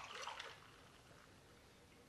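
Faint trickle of frothy hot chocolate pouring from a protein shaker's spout into a mug, slightly louder in the first half second, then almost silent.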